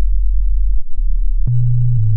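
Electronic music: a loud, deep sine-wave synth bass stepping between low notes, with a click at each change of note.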